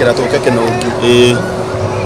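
A man talking in a car cabin, with a faint steady hum underneath.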